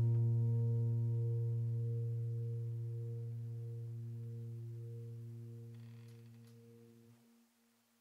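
A low piano chord left ringing, fading slowly away until it dies out about seven and a half seconds in.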